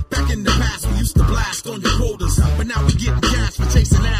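West Coast hip hop track: rapping over a beat with heavy bass that drops out for short gaps.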